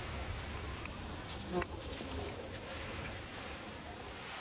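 A flying insect buzzing close by, over steady outdoor ambience, with a brief sharp tick about one and a half seconds in.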